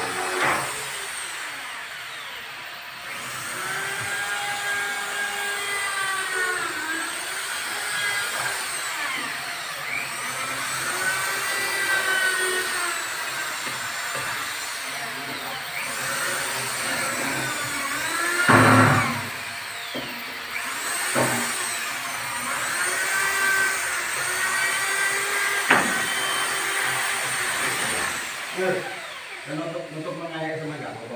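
Corded electric drill run in repeated short spurts on a wooden door's hinges, its motor pitch rising and falling with each pull of the trigger. A single loud knock comes about two-thirds of the way through.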